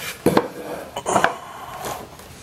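A handful of light clinks and knocks from hands handling a homemade foam cutter's pegboard frame, metal rod and wire.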